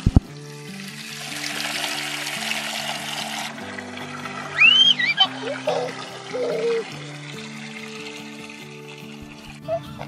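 Water from a garden hose pouring and splashing into a stock tank, stopping suddenly about three and a half seconds in, over background music of soft held notes. A child's voice calls out briefly in the middle.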